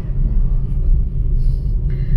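Steady low rumble of a car driving along a road, heard from inside the cabin.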